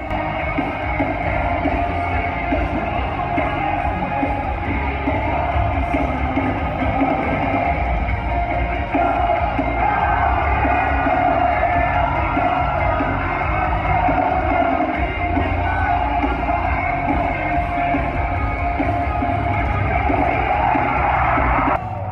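Rock band playing live at full volume, with distorted guitars, pounding bass and drums, and a singing voice. It is recorded on a phone from inside the crowd, so it sounds dull and boomy, with little treble.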